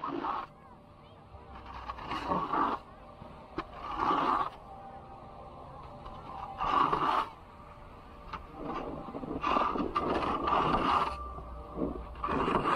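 Edges scraping across packed snow in a series of turns down a slope: about six scrapes, one every two seconds or so, with a longer scrape near the end.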